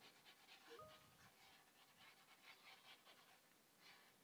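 Near silence: faint, quick, rhythmic breathy noise, with a brief faint squeak about a second in.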